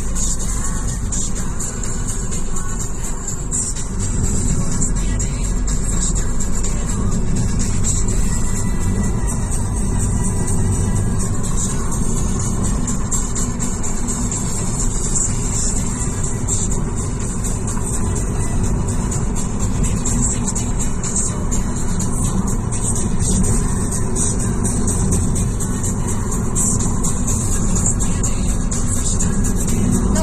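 Steady road and engine noise inside a moving car's cabin, with music playing over it.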